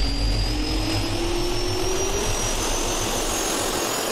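Jet engine spool-up sound effect for an animated logo: a turbine whine rising steadily in pitch over a steady rush of air noise.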